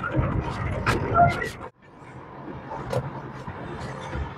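Road noise heard from inside a moving car, with a voice over the first second and a half. The sound cuts off abruptly and comes back as a steadier hum of traffic.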